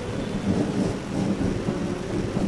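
Low rumbling background noise with a steady hiss: the room and crowd noise picked up by the bunched microphones between phrases of speech.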